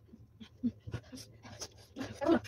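A person panting in short, quick, quiet breaths through an open mouth, with faint little voiced catches, reacting to the burn of extra-spicy ramen.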